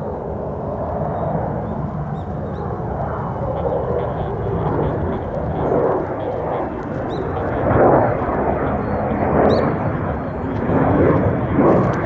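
Loud jet noise from the two J79 turbojets of an F-4EJ Phantom II flying overhead, growing louder and swelling several times as it passes.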